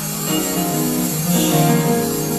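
Live gospel band playing an instrumental passage, held notes shifting in pitch, with no voices.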